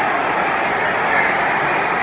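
Football stadium crowd making a steady din of many voices.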